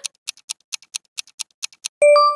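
Countdown-timer ticking sound effect: quick clock-like ticks, about six a second, as the quiz timer runs out.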